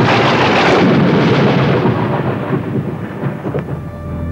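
A loud, thunder-like rumbling roar of noise that swells at the start and then dies away over about three seconds.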